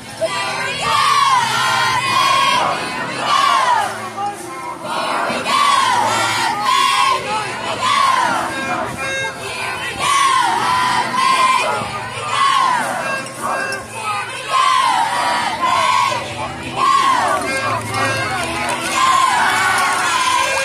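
A squad of cheerleaders shouting a short cheer in unison, the same rise-and-fall chant repeated about every two seconds by many high voices.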